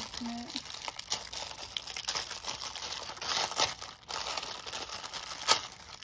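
Thin clear plastic packaging bag crinkling and crackling as it is handled and pulled off a plastic binder, with a few sharper crackles, the loudest about five and a half seconds in.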